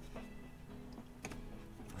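Quiet background music with steady held notes, and a couple of faint taps of trading cards being set down on a table.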